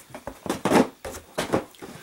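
Cardboard shipping box being handled and closed: flaps pushed down over the packaged figures inside, making several short dry rustles and scrapes of cardboard. The loudest comes a little after half a second in.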